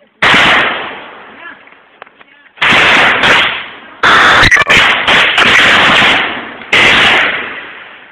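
Close gunfire in four loud bursts, overloading the recording, each trailing off in echo over a second or two. The longest, about two and a half seconds, is in the middle, with rapid repeated shots.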